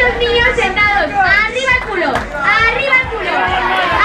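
A crowd of children and adults shouting and cheering over one another, many high voices at once, with music playing underneath.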